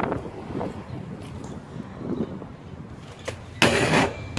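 BMX bike hitting a concrete curb ledge: a sharp knock at the start, then a louder, short clatter of the bike against the concrete near the end.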